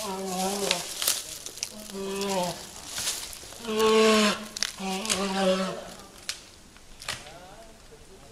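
Trapped brown bear caught by a leg in a wire snare, bawling four times in long, steady moans of under a second each, about a second apart, a sign of its distress and likely pain. A few faint clicks follow in the quieter last two seconds.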